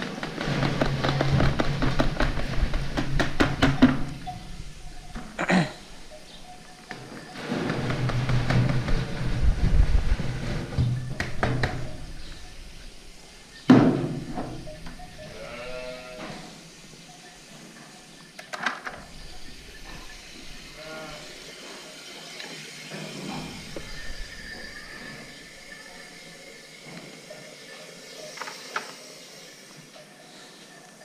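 Feed poured from a plastic bucket into a galvanized metal trough, a loud rattling pour for about four seconds and another from about eight to twelve seconds. A sharp knock comes near fourteen seconds, followed by a sheep's bleat and some quieter bleating and clicks.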